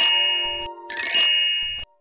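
Two bright metallic chime strikes about a second apart, each ringing out and fading: a cartoon sound effect.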